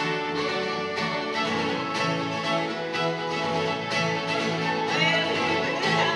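Live bluegrass instrumental break on fiddle and guitar, played at a steady, even level.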